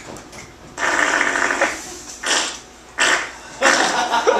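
A performer making raspy mouth noises, mock farts, in three bursts: one of about a second starting about a second in, a short one past the middle, and another near the end.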